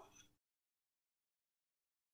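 Silence: the sound track cuts out completely just after the tail of a spoken word.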